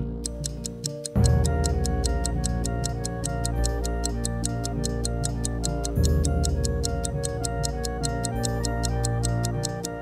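Clock-style ticking of a countdown timer, quick and even, over background music with a steady beat; the music comes in loudly about a second in and starts a new phrase about six seconds in.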